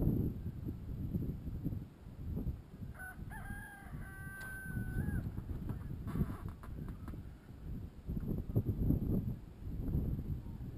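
A rooster crowing once, about three seconds in: a single pitched call lasting about two seconds. Under it, a low rumble of wind on the microphone.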